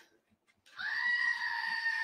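Screaming-goat novelty toy playing its recorded goat scream: one long, steady bleat starting under a second in.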